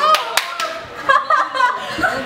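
A few quick hand claps near the start, amid girls laughing and talking.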